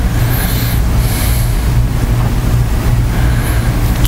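A steady low hum over a constant hiss, with no speech.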